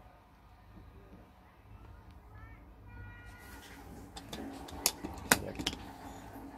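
A stainless-steel travel mug with a plastic screw lid, holding shaken frothed milk, is handled and opened: a handful of sharp clicks and knocks in the last two seconds, the loudest about five seconds in. Before that there is only a low steady hum.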